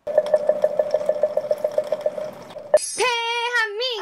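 Added editing sound effects: a rapid pulsing beep, about eight a second, for over two seconds. Then a click and a wavering, synthetic-sounding pitched tone that wobbles up and down near the end.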